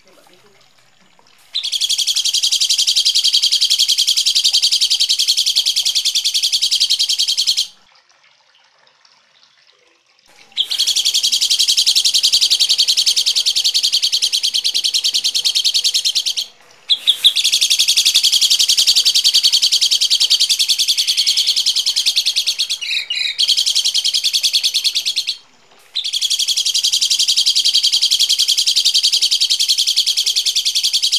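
Harsh, rough songbird chatter, a dense, fast-repeated high call given in long bursts of about six seconds, four times, with brief pauses between. It is a loud, looped tutor recording of harsh bird voices.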